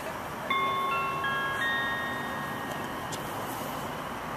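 Station public-address chime: a few ringing notes struck one after another in the first second and a half, each ringing on and fading, the signal that an automated platform announcement follows.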